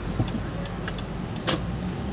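Steady low rumble of a car heard from inside its cabin as it idles in traffic, with a sharp click about a second and a half in.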